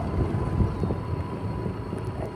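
Riding noise of a small motorcycle on the move: wind rumbling over the microphone, with engine and road noise underneath.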